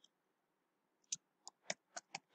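Computer keyboard keystrokes: a few single key clicks, starting about a second in, about four in the last second.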